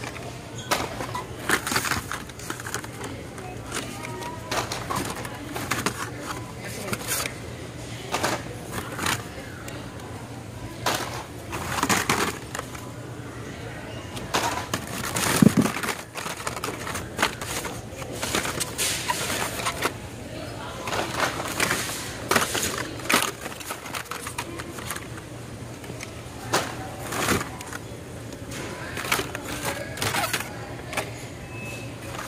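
Blister-packed Hot Wheels cards being pushed and shuffled through in a bin: irregular clacks and crinkles of plastic blisters and cardboard backs knocking together, over a steady low hum.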